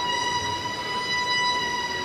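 A violin holding one long, steady high note.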